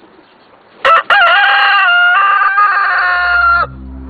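A rooster crowing once, loud: a short sharp note about a second in, then a long held call that cuts off near the end.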